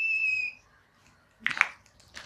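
Whiteboard marker squeaking as a line is drawn: one steady high squeak that stops about half a second in, followed by a brief soft noise about a second and a half in.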